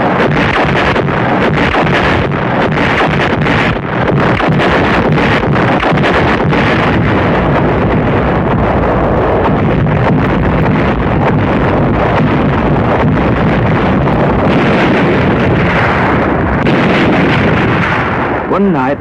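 Night bombardment: artillery and shell explosions sound as a continuous loud rumble, with many sharp cracks of shots and bursts running through it.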